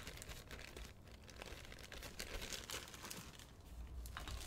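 Faint crinkling of a plastic bag being handled, in scattered light crackles.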